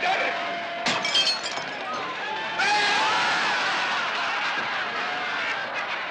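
A sharp crash with a shattering, tinkling spray, like glass breaking, about a second in. From a little before halfway, a crowd laughs and shouts.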